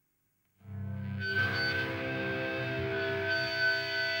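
Amplified electric guitars and bass ringing out sustained, held notes, starting suddenly about half a second in after a brief silence, with a high steady tone joining about a second in.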